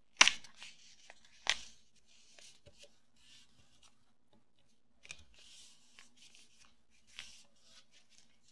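A folded sheet of black paper being handled and creased by hand: two sharp crisp crackles of the paper near the start, then soft, intermittent rustling and crinkling as the folds are pressed flat.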